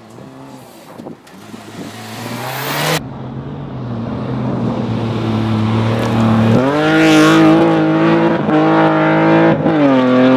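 Rally cars at full throttle on a gravel stage, engines at high revs with loose gravel hissing under the tyres. The sound changes abruptly about three seconds in and again just past six seconds, where it gets louder, with a brief drop in revs near the end.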